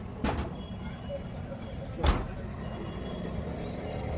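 Wires and a multimeter test lead being handled and reconnected by hand: a faint click just after the start and a sharper knock about two seconds in, over a steady low background rumble.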